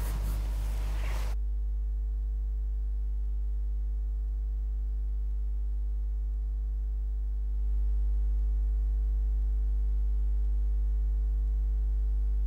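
Steady low electrical hum with a ladder of overtones, left alone on the audio once the studio sound cuts away about a second in; it steps up slightly in level about seven and a half seconds in.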